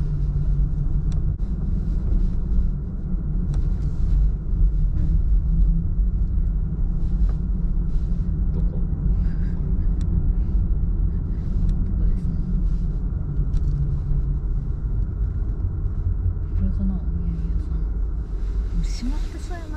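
A car driving slowly, its engine and tyre noise heard as a steady low rumble inside the cabin.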